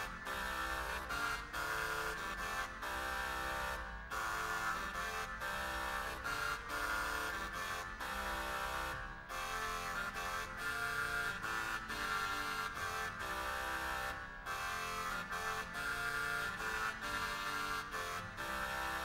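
A Renaissance dance played by an early-music wind consort: bright, reedy instruments in several parts, moving in steady separated notes with brief pauses at phrase ends.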